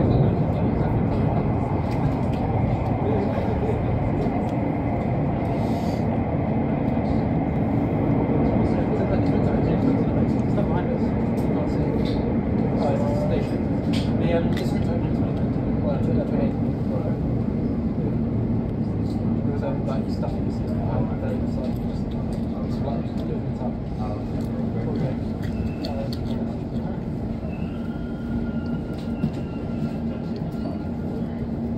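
Elizabeth line train (Class 345) running at speed, heard from inside the carriage: a steady rumble and rush of wheels on rail. A low hum strengthens from about halfway, and a thin motor whine comes in near the end.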